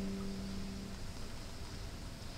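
The last notes of a guitar ensemble ringing out and fading away about a second in, leaving faint room noise.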